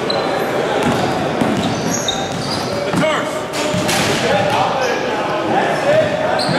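Basketballs bouncing on a hardwood court, with several sharp knocks over a steady background of voices echoing in a large gym.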